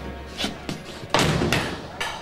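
A heavy steel cell door slams shut a little past halfway, its loud hit ringing on and fading, after two lighter knocks.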